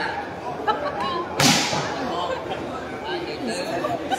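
A volleyball struck hard once, about a second and a half in: a single sharp smack with a short echo off the shed roof, over the crowd's steady chatter.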